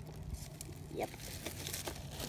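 Faint handling noise of a plastic toy cash register being turned over in the hands: light rustling and crinkling with a few soft clicks.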